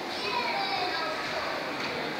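A child's high voice calling out with a falling pitch about half a second in, over a steady background of other voices.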